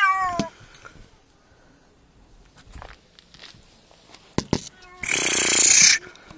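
A cat gives one short meow that falls in pitch, followed by a few faint knocks and, near the end, a loud breathy hiss lasting about a second.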